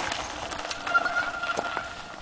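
Mountain bike rolling over a loose-stone singletrack: tyres crunching on gravel with scattered clicks and rattles, easing off slightly. A faint thin high tone sounds briefly near the middle.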